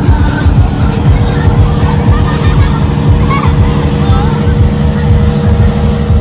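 Loud, steady low rumble of a passing illuminated carnival cart's engines, with crowd voices over it.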